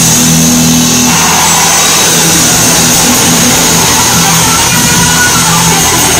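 Live rock band playing loud, recorded on a phone: heavily distorted electric guitar holding droning low chords that change every second or so, with a dense noisy wash over it.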